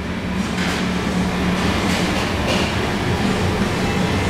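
A steady low machine hum at one constant pitch, with an even rushing noise over it.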